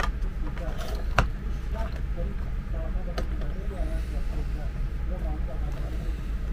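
Sharp clicks of a plastic charger housing and its circuit board being handled as the board is seated in the case. The loudest click comes about a second in and another about three seconds in, over a steady low hum.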